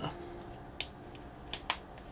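Five short, sharp clicks spread irregularly over about a second and a half, two of them louder than the rest.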